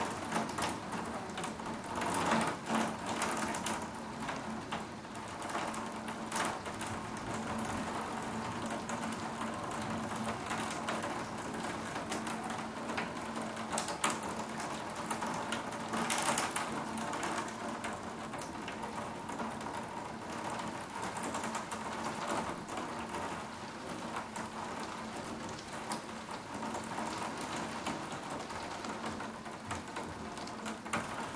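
Heavy storm rain heard from inside through a window: a steady wash of rain with scattered sharp ticks of drops striking the glass.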